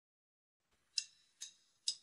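Three evenly spaced count-in clicks, a little over two a second, starting about a second in after near silence. They set the tempo for the band track that follows.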